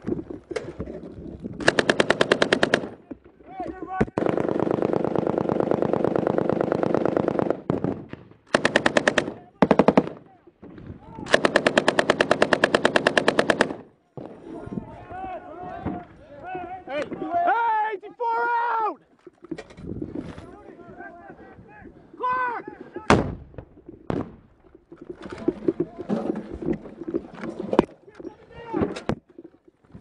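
Belt-fed machine gun firing close by in repeated bursts, two of them long, for about the first fourteen seconds. After that come scattered single shots.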